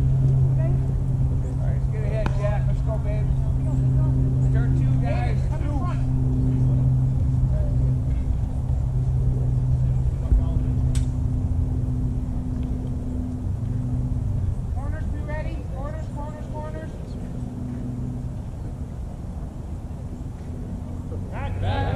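Voices of players and spectators calling out over a steady low motor hum, which fades after about ten seconds. A single sharp crack comes about eleven seconds in.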